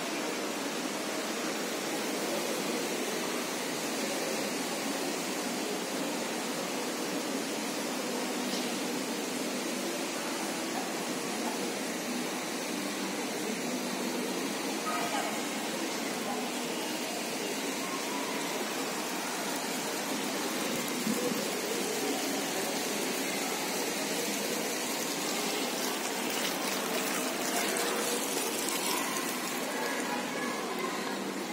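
Steady rushing background noise, like running water, with faint indistinct voices of people nearby.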